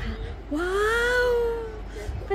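A young girl's voice in one long drawn-out call, sliding up in pitch and then slowly falling.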